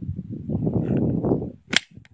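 Handling noise of a 9mm semi-automatic pistol being readied close to the microphone, then one sharp metallic snap near the end, the slide closing to chamber a round.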